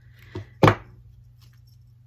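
A hot glue gun being set down on a wooden tabletop: a light knock, then a sharper, louder knock about a third of a second later.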